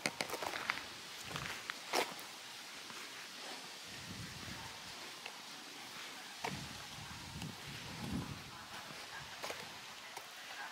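Footsteps of a person walking over grass and dry fallen leaves, soft and irregular, with a few sharp clicks in the first couple of seconds.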